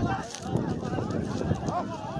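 Several men shouting over one another, with hurried footsteps and rustling through dry reeds and brush.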